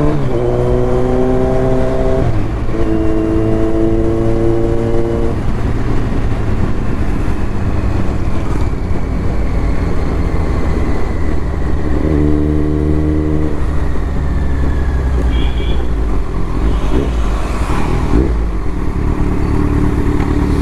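Kawasaki Z900's inline-four engine heard from the rider's seat, pulling up through the gears, with the pitch rising and dropping at shifts right at the start and about two seconds in. After that it runs over a steady rush of wind and road noise while cruising. The engine note comes up again for a moment about twelve seconds in.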